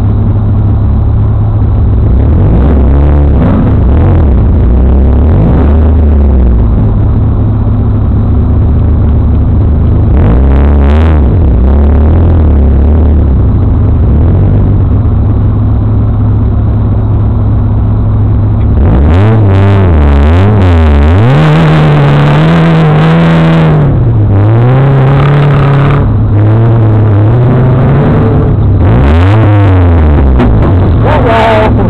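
Off-road buggy engines: a steady low idle with repeated revs that rise and fall in pitch, busiest about two-thirds of the way in and again near the end.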